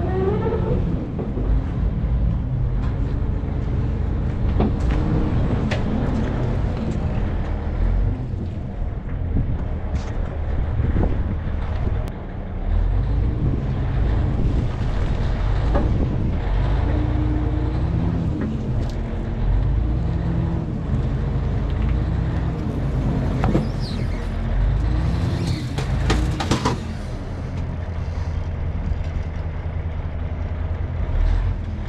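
Heavy diesel engine of a Cat 988 wheel loader revving up and down repeatedly under load while lifting a Cat D9H dozer, with occasional sharp metal clanks.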